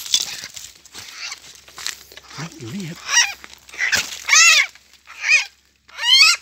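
Chinese francolin calling: three or four loud, harsh, arched notes about a second apart, starting about three seconds in. Before them comes a crunching, brushing noise.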